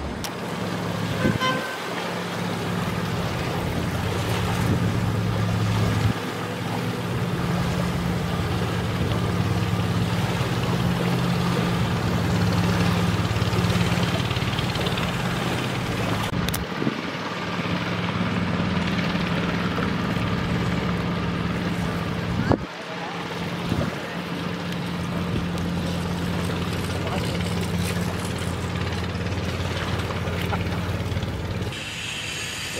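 A steady low engine drone with a few short breaks, and a sharp click about two-thirds of the way through.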